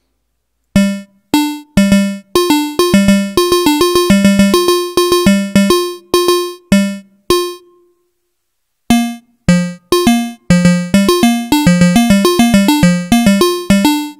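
Moog Labyrinth analog synthesizer playing a sequence of short, quickly decaying pitched notes. The sequence builds to a dense run of notes, thins out to silence a little past halfway, then builds up again: Sequencer 2 is flipping the bits of Sequencer 1, so the steps switch on and off in turn.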